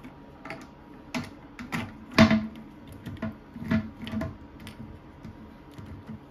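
Plastic clicks and taps of a toilet seat's hinge bracket and plastic bolt being fitted and snapped into place on a porcelain bowl: a string of short, scattered clicks, with one sharper knock a little over two seconds in.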